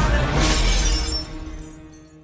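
A plate-glass shop window shattering under a baseball bat blow about half a second in, with shards tinkling after it, over loud music that fades out over the second half.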